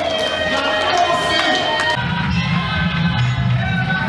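Music mixed with a crowd of guests talking and cheering. About halfway through the sound changes abruptly, the bright high end dropping away as a heavy bass comes in.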